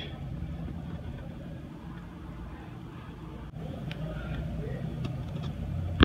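A steady low mechanical hum, with a few faint clicks about halfway through.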